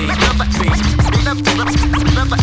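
Hip hop beat with turntable scratching over it: short, quick scratches cut across a steady bass line and drum hits.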